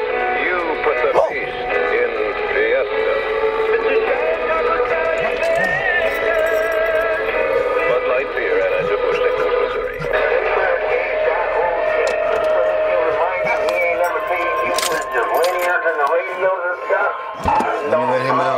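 Music with singing transmitted over a CB channel and played through the external speaker of a Stryker SR955HPC CB radio, with the narrow, treble-cut sound of CB audio.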